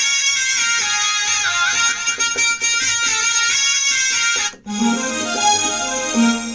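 Roland XPS-30 synthesizer playing a high, ornamented melody with bending pitch on a shehnai patch. After a brief break about four and a half seconds in, it moves to lower notes on a strings patch.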